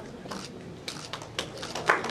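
Scattered hand claps from a few people, starting about a second in and growing thicker near the end as applause builds.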